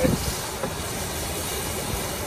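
Fish fillet sizzling in a cast iron skillet over a propane camp stove burner, a steady hiss, with wind buffeting the microphone.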